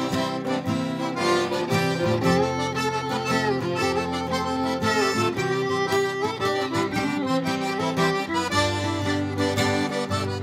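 A Cajun single-row diatonic button accordion plays the melody of a slow waltz. An acoustic guitar strums the chords beneath it.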